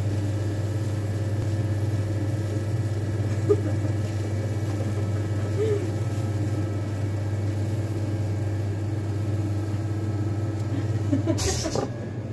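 An electric sausage filler running with a steady low hum as it pushes meat into the casing at the nozzle. Near the end there is a brief rustle and knock.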